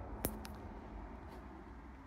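Faint, steady low rumble of road traffic, with a couple of sharp clicks about a quarter and half a second in.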